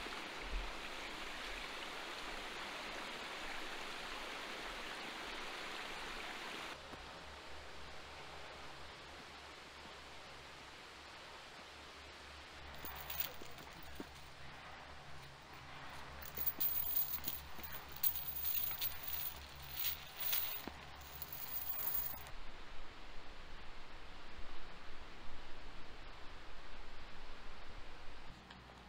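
A small creek trickling over rocks, with a steady hiss, for the first several seconds. After a cut, hiking footsteps crunch irregularly on a gravel and rock trail for about ten seconds, ending suddenly at another cut.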